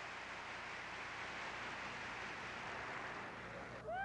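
Large arena audience applauding steadily; the applause cuts off suddenly near the end, followed by a short "woo!"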